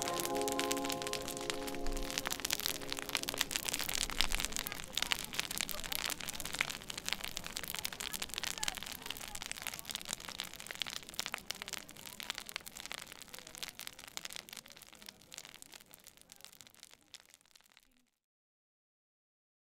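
Tall bonfire crackling and popping steadily, slowly fading out to nothing by the end. A held musical chord dies away in the first two seconds or so.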